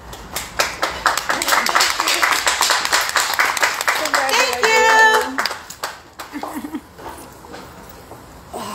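People clapping for about four seconds, then a voice calls out in one drawn-out cry near the middle, followed by a few scattered claps.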